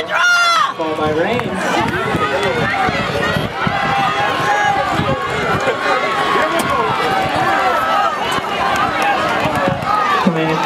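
Spectators in the stands shouting and cheering, many voices overlapping without let-up, with a loud high yell in the first second.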